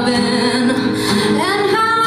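Live rock band playing, with a female lead vocal singing held notes, one sliding up in pitch in the second half, over electric guitar, drum kit and keyboard.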